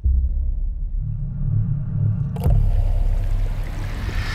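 Deep low rumble from a film trailer's sound design, starting suddenly, with a sharp hit about two and a half seconds in.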